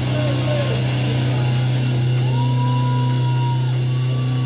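Live rock band playing electric guitar and bass: a loud, steady low drone under guitar notes that bend in pitch, with one long held high note about two seconds in.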